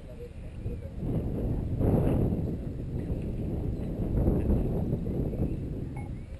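Wind buffeting an outdoor camera microphone: a low, uneven rumble that rises and falls, loudest about two seconds in.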